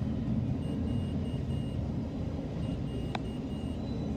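Double-stack intermodal freight train rolling past at a grade crossing: a steady low rumble of wheels on rail, with a short click about three seconds in.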